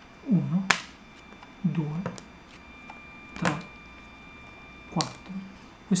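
A man's voice saying four short single words about a second and a half apart, counting off cards from the top of the deck. Two sharp clicks come alongside the words.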